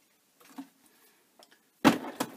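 A plastic tub of paper mache paste is set down on a wooden workbench with a sudden thump near the end, after a few faint handling sounds.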